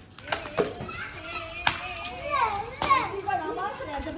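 High, excited voices shouting and laughing, cut by about four sharp slaps of a twisted-cloth whip (kolda) striking, the loudest a little after halfway and near three seconds in.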